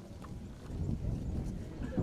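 Handling noise from a handheld microphone as it is passed from one person to another: low rumbling knocks and rubbing, with faint voices behind.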